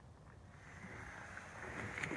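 Low steady rumble and hiss of a slow-moving vehicle, most likely the golf cart being driven, slowly growing louder.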